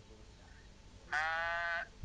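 A single bleat from a sheep or goat, starting about a second in and lasting under a second, with a slight waver.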